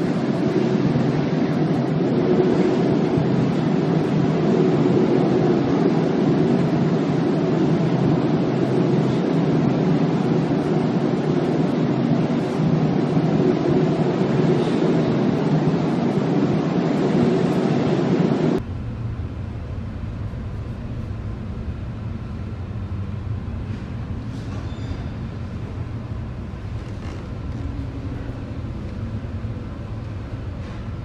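Loud steady storm noise on board a ship: wind and heavy seas breaking over the bow. Well past halfway it cuts off abruptly to a quieter, deeper rumble of wind and sea.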